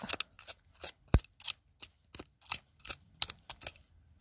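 Irregular scraping and clicking of digging in loose gravelly soil, several short scrapes a second, with one sharp knock just over a second in.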